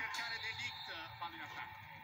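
Faint male speech, quieter than the nearby voices in the room: commentary from the television broadcast of the football match.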